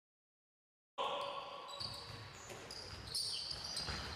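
Silence for about a second, then the sound of a handball drill on an indoor court: a handball bouncing on the hall floor, players' footsteps and short shoe squeaks coming and going.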